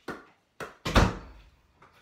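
Basketball being handled and spun on a fingertip: a few light thumps, then one loud, deep thud about a second in that rings briefly in a small room.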